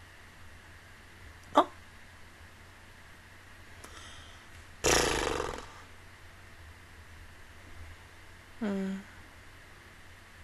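A woman's short non-speech vocal sounds close to the microphone: a brief sharp catch of the voice, then a loud breathy exhale near the middle, and a short hummed "mm" falling in pitch near the end.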